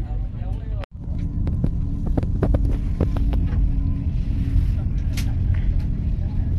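Steady low rumble of a passenger train running, heard from inside the carriage, with a scatter of short clicks and knocks in the first few seconds. The sound cuts out briefly about a second in.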